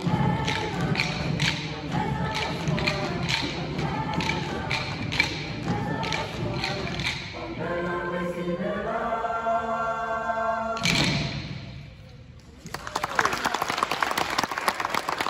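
Choir singing a rhythmic African-style song over sticks struck together in a steady beat, about two strikes a second. The choir then holds a long final chord, cut off by a sharp accent about eleven seconds in. After a short lull, audience applause starts near the end.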